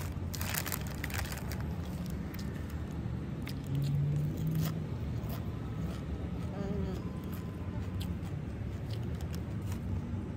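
A plastic snack packet crinkling in the hands for about the first second, then close-miked chewing with small mouth clicks over a steady low rumble of outdoor background.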